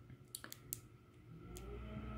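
A few faint, sharp plastic clicks as the two halves of a 1/6-scale figure's belt are wiggled up and down on their locating pegs to unclip them. A faint low hum comes in during the second half.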